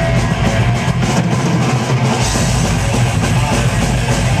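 Thrash metal band playing live at full volume: distorted electric guitars over a drum kit, heard from within the crowd. The deep bass drops out briefly about a second in, then returns.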